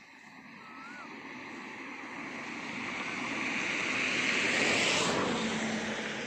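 Engine noise of something passing by, a smooth rushing sound that swells over about five seconds and then eases off.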